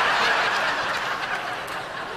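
Large audience laughing together in a theatre, loudest at the start and gradually dying away.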